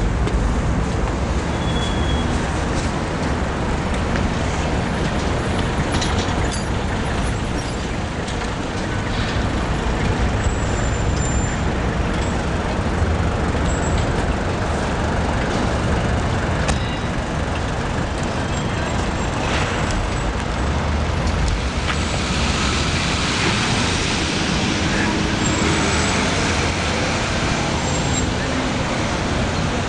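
City street traffic: a steady noise of passing cars and taxis, with a few short knocks and a hissier rush in the last few seconds.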